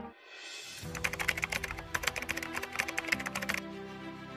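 Computer-keyboard typing sound effect: a rapid run of clicks starting about a second in and stopping about a second before the end, over a soft music bed.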